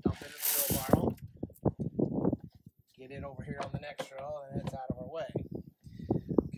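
Leftover seed corn poured out of a planter's seed meter into a wheelbarrow: a brief rattling hiss lasting about a second, followed by indistinct talking.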